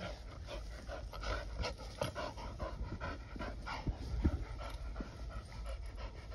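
Dog panting after vigorous play, a quick run of short breaths.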